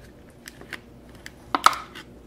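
Stiff clear plastic blister packaging of a diecast toy car clicking and crackling as it is handled and pried open: a few scattered clicks, then a louder crackle about three quarters of the way through.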